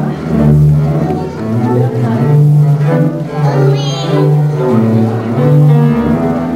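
A bowed double bass plays a melody in long, sustained low notes over piano accompaniment.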